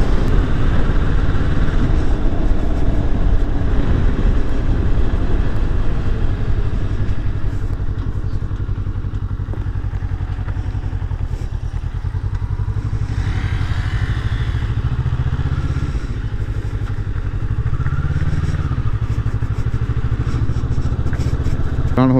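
Motorcycle engine running as the bike is ridden along. It eases off through the middle, then its pitch rises briefly about three-quarters of the way through as the throttle opens.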